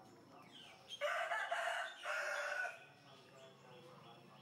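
A rooster crowing once, starting about a second in and lasting under two seconds, in two parts with a short break between them.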